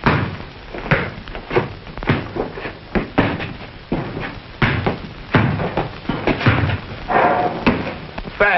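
A series of irregular knocks and thuds, one or two a second.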